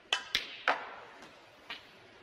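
A snooker shot: the leather cue tip strikes the cue ball, followed by sharp clicks of the resin snooker balls hitting each other. Three loud clicks come within the first second, and a fainter one comes near the end.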